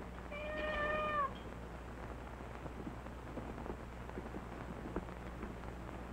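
A domestic cat meows once, a single drawn-out meow about a second long near the start.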